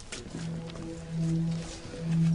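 Background music: soft, held low notes from a dramatic underscore, swelling slightly about a second in.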